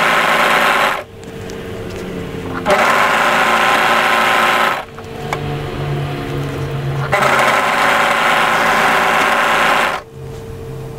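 Brother 1034D overlocker running in three bursts as it stitches and trims a fabric edge: it stops about a second in, runs again for about two seconds from just under three seconds in, and starts again at about seven seconds in.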